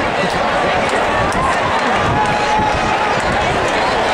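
Stadium crowd din, many spectators talking at once at a steady level, with voices near the microphone standing out now and then.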